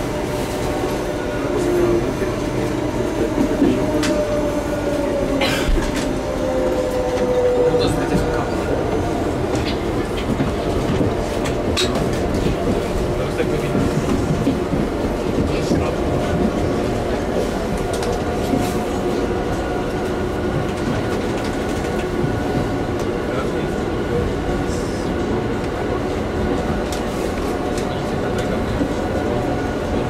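Inside a moving electric commuter train: steady rumble of the wheels on the track with scattered short clicks. A thin whine slides down in pitch during the first several seconds.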